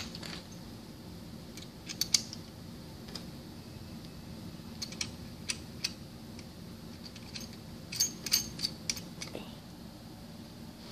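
Light metallic clicks and clinks of a covered single-spring mechanical seal being slid by hand along a pump shaft, coming in small clusters about two seconds in, around five to six seconds, and around eight seconds in, over a steady low hum.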